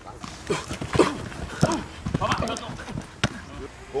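A man shouting short, repeated 'hey' calls about twice a second, a cadence for a footwork drill. A single sharp click comes about three seconds in.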